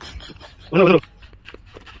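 A single short dog-like bark, a wavering yelp lasting about a third of a second, comes about 0.7 seconds in.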